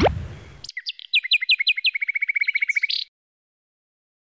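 Bird song: a few quick downward-sweeping chirps that run into a fast, even trill, stopping about three seconds in. The tail of a deep boom fades out during the first half second.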